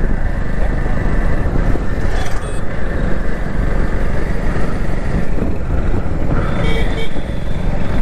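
Riding noise from a moving motorcycle: engine and wind buffeting the microphone, a dense low rumble that never lets up.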